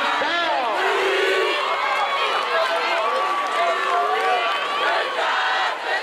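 Crowd in stadium bleachers: many voices talking and shouting over one another, with a longer held call in the middle.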